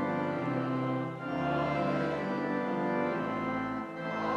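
Church organ playing a hymn in held chords, with a chord change about a second in and another near the end.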